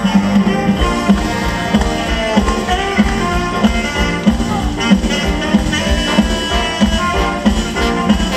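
Live band playing an upbeat number with a saxophone over a steady drum beat, the full band coming in right at the start.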